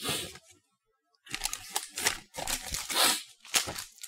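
Plastic snack packaging being handled, crinkling in a run of irregular rustles from about a second in until just before the end.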